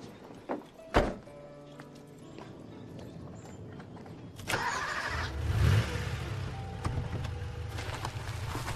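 A door shuts with a sharp thunk about a second in. About four and a half seconds in, a convertible sports car's engine starts and settles into a low, steady rumble, with film score music underneath.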